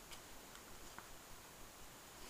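Near silence: room tone with two faint ticks about a second apart.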